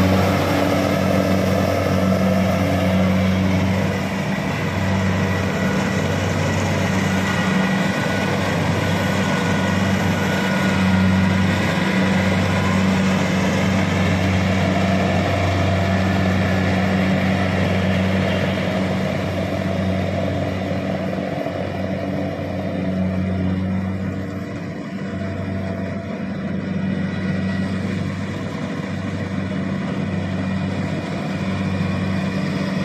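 Kubota DC-70 Pro combine harvester running steadily under load while cutting and threshing rice: a constant low engine hum with the machinery's noise over it. It grows a little quieter over the last third as the machine moves away.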